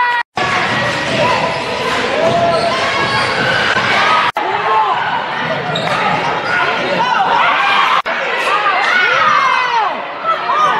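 A basketball bouncing on a gym floor during play, with players' and spectators' voices echoing around the gym. The sound drops out sharply for an instant three times.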